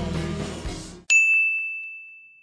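Background music stops abruptly, then about a second in a single high chime sounds once and rings, slowly dying away: an end-card sound effect.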